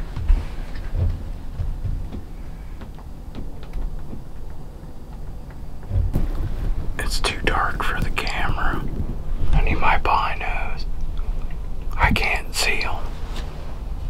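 Hushed whispering voices in three short stretches in the second half, over a steady low rumble.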